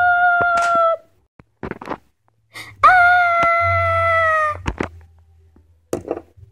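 A girl's voice giving two long, steady wails of about two seconds each, the second falling slightly at its end, with brief breathy sounds between: play-acted cries of a doll in labour.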